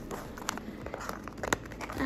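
Small white cardboard box being squeezed and worked open by hand: faint rustling of the card with two sharp clicks about a second apart.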